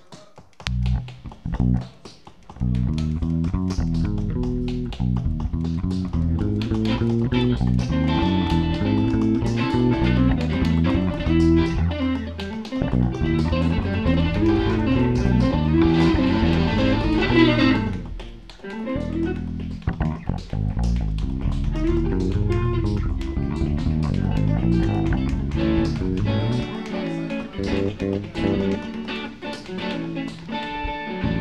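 Live rock band playing: electric guitar, bass guitar and drums. A few hits open it, the full band comes in about two and a half seconds in, drops out briefly around eighteen seconds, then plays on.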